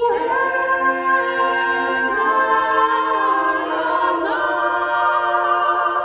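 Women's vocal ensemble singing a cappella in several-part harmony: held chords that change a couple of times.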